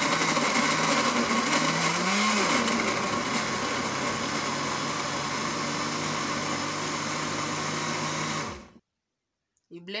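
Countertop jug blender running on mango cubes and milk, louder for the first two or three seconds while it chops the chunks, then running steadily as the mix turns smooth. It is switched off abruptly near the end.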